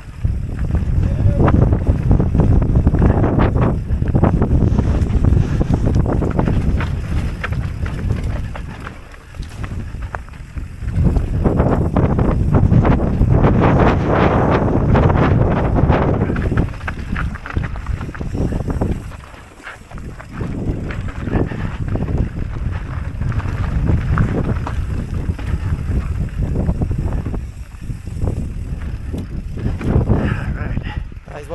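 Wind buffeting the helmet-camera microphone, with mountain bike tyres rumbling over a dry, rocky dirt trail and the bike rattling on the bumps during a fast descent. The noise eases briefly twice.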